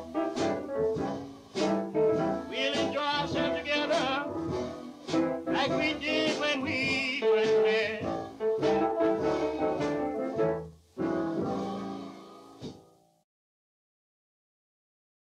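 Closing instrumental bars of a 1940s-era blues record: a small band with horns over a steady beat. It breaks off for a moment about eleven seconds in, then plays a final chord that dies away, and the record ends in silence.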